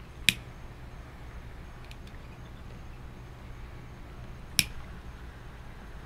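Two sharp clicks about four seconds apart, from a lighter being sparked to light a cigar, over a low steady hum.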